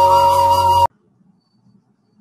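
Instrumental intro music: a wavering melody over steady held drone notes, cut off suddenly just under a second in, then near silence.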